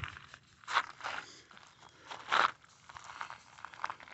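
A man coughing a few short times, the coughs brought on by cold air.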